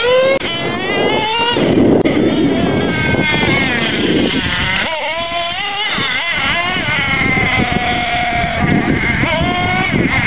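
Ansmann Kryptonite nitro RC truggy's small glow-fuel engine, revving up and down in a high, rising-and-falling whine as the truck is driven hard. It holds a steadier pitch for a couple of seconds toward the end.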